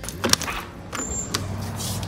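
Deadbolt and lever handle of a glass patio door clicking as it is unlocked and opened, with a few sharp clicks in the first second and a half and a short hiss near the end. From about half a second in, a steady low hum carries on underneath.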